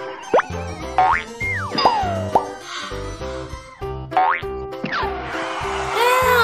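Bouncy children's cartoon background music with a steady beat, overlaid by cartoon 'boing' sound effects: quick springy pitch sweeps, some rising and some falling, about six times, the last a longer, louder falling sweep near the end.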